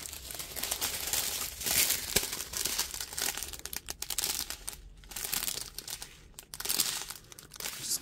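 Thin plastic packaging of a diamond painting kit crinkling as small sealed bags of resin drills are picked up, shuffled and sorted by hand, in uneven bursts with a couple of brief pauses.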